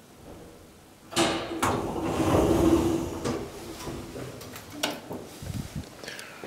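KONE hydraulic elevator's automatic car doors sliding open about a second in, with the door operator's motor humming steadily for about two seconds, followed by a few sharp clicks and knocks as the doors finish and the way out is opened.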